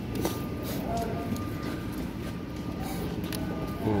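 A steady low mechanical rumble in the background, with faint voices and a few light clicks of handling.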